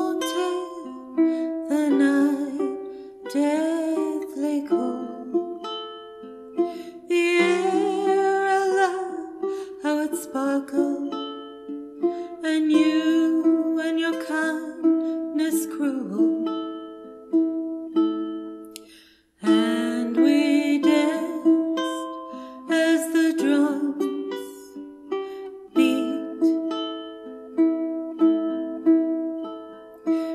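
Caramel CT102A tenor ukulele played through the chords of a slow song, with a woman singing over it in places. The music breaks off briefly about two-thirds of the way through, then starts again.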